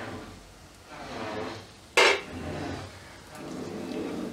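A utensil knocks once, sharply, against a nonstick wok about two seconds in, over the soft sizzle of an onion-and-potato masala frying in oil as chilli powder is added.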